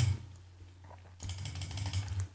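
Computer mouse scroll wheel ticking rapidly for about a second, starting a little past halfway, over a low steady hum.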